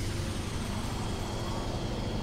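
A steady low rumble, even and unbroken, with faint steady high-pitched tones above it.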